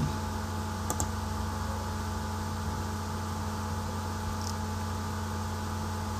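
A steady low electrical hum with hiss on the recording, broken by a few light computer clicks: a quick pair about a second in and one more at about four and a half seconds.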